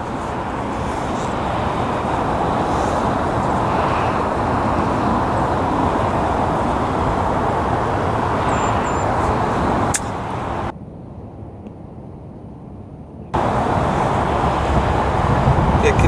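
Steady outdoor background noise, a rushing haze like distant road traffic. A single sharp click comes about ten seconds in. Soon after, the noise drops away for about two and a half seconds, then returns.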